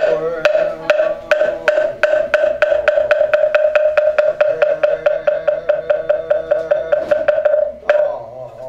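Buddhist moktak (wooden fish) struck over and over in a roll that gradually speeds up, from about two and a half to about five strokes a second, ending with a single final stroke near the end. Under it a monk holds one long chanted note.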